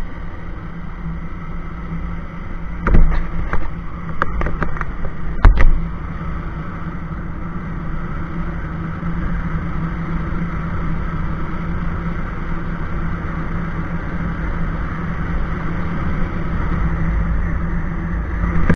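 Bajaj Pulsar 220F's single-cylinder engine running steadily while riding at road speed. A few sharp knocks break in between about three and six seconds in.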